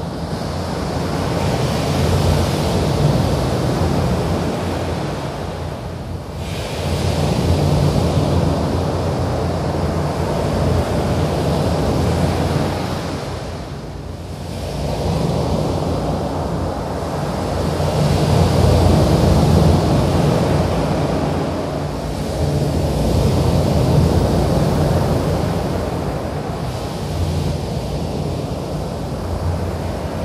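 Washes of rushing, surf-like noise that swell and ebb every five to eight seconds over a steady low hum.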